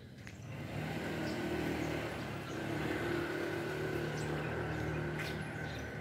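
Vehicle engine running steadily at low speed: an even low hum with a faint higher whine above it.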